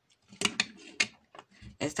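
Plastic LEGO plates clicking and knocking against each other as they are handled: a few sharp clicks about half a second and a second in.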